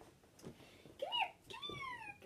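A dog whining: a short rising-and-falling whine about a second in, then a longer whine that slowly falls in pitch near the end.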